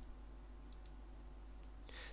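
Faint computer mouse clicks, a quick pair under a second in and a single one near the end, over a low steady hiss.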